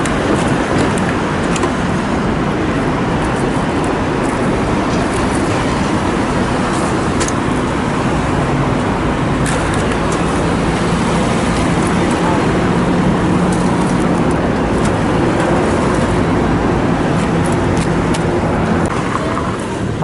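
Steady street traffic noise, with motor vehicle engines running close by and an engine hum holding steady through the second half. A few faint clicks sound over it.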